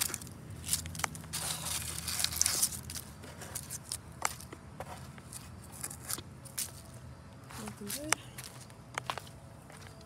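Footsteps crunching through dry fallen leaves for the first few seconds, then scattered light clicks and taps.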